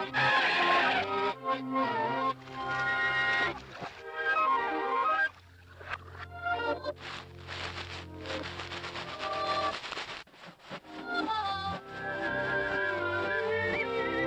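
Orchestral cartoon underscore playing lively phrases that change quickly, dropping away briefly about five seconds in and settling into held notes near the end.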